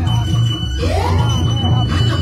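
Loud dance music with a heavy, steady bass beat, a high held tone and a note that swoops up and down about halfway through.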